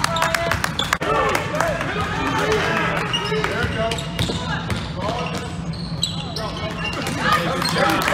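Basketball dribbled on a hardwood gym floor, a rapid run of bounces, with voices calling out over it in the echoing gym.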